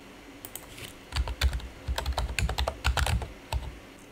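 Typing on a computer keyboard: a quick run of keystrokes, about fifteen, starting about a second in and stopping shortly before the end, as a wallet name and worker name are typed into a text field.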